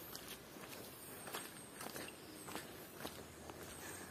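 Faint footsteps of a person walking in rubber flip-flops on a stony dirt path, about two steps a second.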